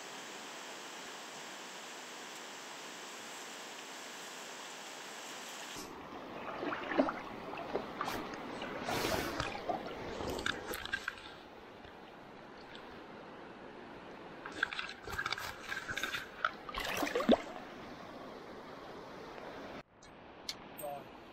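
Steady rush of a small stream, then water splashing and sloshing in two irregular spells as a salmon is held in the shallows and let go by hand.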